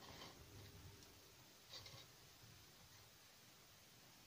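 Near silence: room tone with faint handling of soft modelling clay with metal tweezers, a scratchy rustle at the start and a brief click a little under two seconds in.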